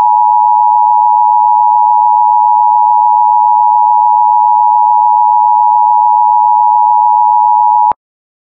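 Emergency Alert System attention signal: a loud, steady two-tone alarm held unbroken for about eight seconds, then cut off sharply.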